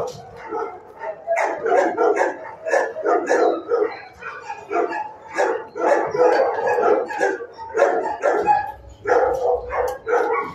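Shelter kennel dogs barking over and over, the barks coming several a second and running into one another with hardly a pause.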